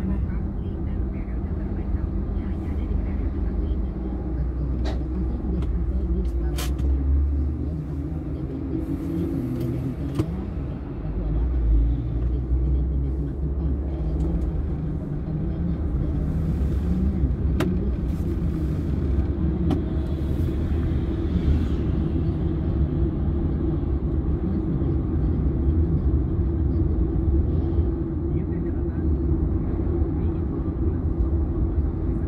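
Car interior noise while driving in slow highway traffic: a steady low rumble of engine and tyres heard from inside the cabin, with a few short clicks here and there.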